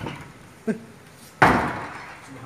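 A panel door slamming shut with a loud bang about a second and a half in, preceded by a shorter sound. It is heard as the door closing on its own.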